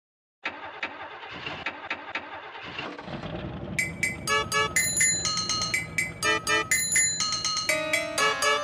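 A car engine cranking over in regular beats for about two and a half seconds, then running with a low rumble. About halfway in, music with bright, chiming pitched notes comes in over it and becomes the loudest sound.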